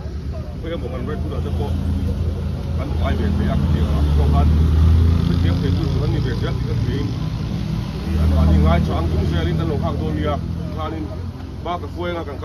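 A motor vehicle's engine running with a steady low hum, swelling louder twice, around four to five seconds in and again near nine seconds, under people talking.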